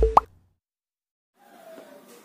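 The last beat of an electronic intro jingle, ending in a short upward-swooping tone. Then dead silence, then a faint room hum in the last half second.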